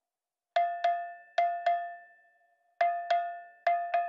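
A cowbell struck alone in a short rhythmic pattern: four pairs of quick strikes with a gap after the second pair, each note ringing briefly. It is the solo opening of a live rock song, before the drums come in.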